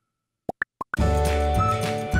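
Four quick rising bubble 'bloop' sound effects, added in the edit, in a silence about half a second in. Upbeat background music with a whistled melody then starts again about halfway through.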